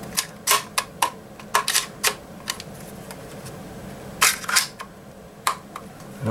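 Trigger assembly of a Franchi Affinity 12-gauge semi-auto shotgun being worked back into the receiver by hand: a series of sharp plastic-and-metal clicks and knocks, the loudest cluster about four seconds in, as the trigger guard is pressed to snap into place.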